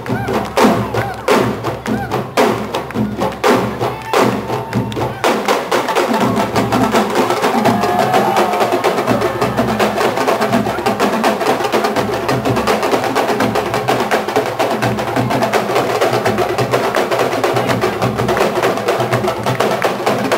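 Senegalese sabar drum ensemble playing live: sharp, separate drum strokes for the first few seconds, then the whole ensemble comes in with dense, fast drumming from about five seconds in.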